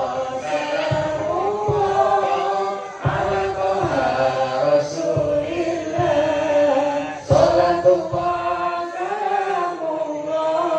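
A man chanting a slow religious song into a microphone, holding long drawn-out notes that bend up and down in pitch, with a few low thumps underneath.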